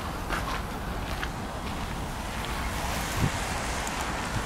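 Wind buffeting the microphone of a handheld camera, a steady low rumbling hiss.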